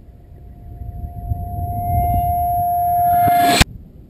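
Intro sound effect: a steady whistling tone over a rumble that swells louder and louder, then cuts off with a sharp crack about three and a half seconds in.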